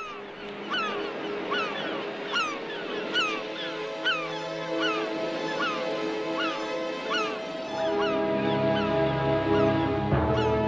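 Soundtrack music of held notes, with deeper notes joining near the end, under a steady run of short, falling bird calls, two or three a second, like a flock calling.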